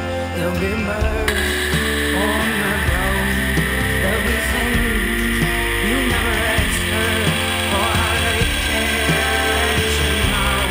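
Background music with a steady beat. About a second in, a steady high hiss comes in suddenly under the music and stays.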